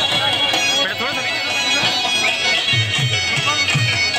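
Attan dance music: a loud, ornamented melody on a surnai reed pipe over dhol drum beats, the drumming heaviest in the last second or so.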